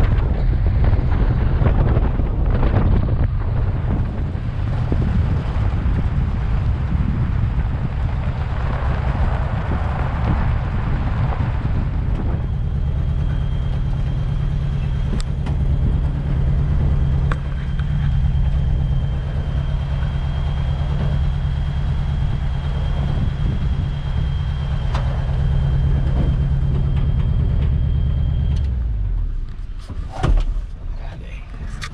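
Older pickup truck's engine running steadily as it drives a forest road, with a thin high whine joining about halfway through. The engine note drops away shortly before the end as the truck comes to a stop.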